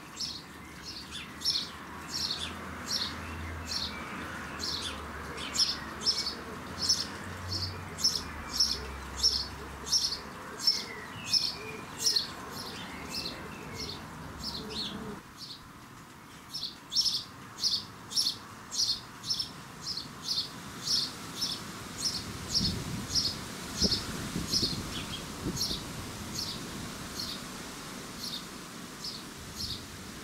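House sparrow chirping over and over, about two short chirps a second, with a brief lull about halfway through.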